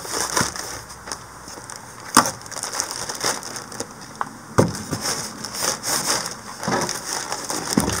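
Plastic and styrofoam packaging being handled as a motor is unpacked: crinkling and crunching, with a few sharp clicks and knocks, the loudest about two seconds in and about halfway through.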